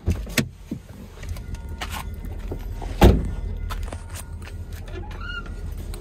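Car door latch clicking open, then the car door shut with a loud thump about three seconds in. A steady low rumble and scattered knocks run under it, with a short high tone a little after five seconds.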